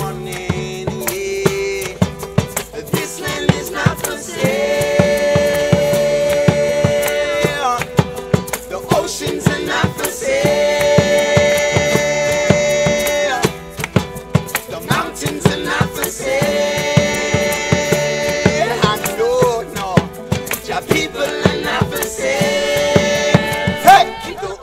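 Acoustic folk band playing: strummed acoustic guitars, banjo and djembe, with several voices singing long held notes together four times, each lasting about three seconds.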